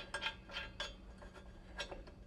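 Several light metallic clinks and taps as a disc mower's cutter blade and its bolt are handled and fitted back onto the cutting disc.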